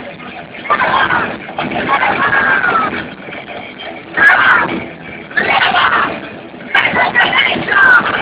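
Thrash metal band playing live, recorded on a phone in the crowd, so the sound is loud, overloaded and dull-topped. Shouted vocals come in short phrases over the band.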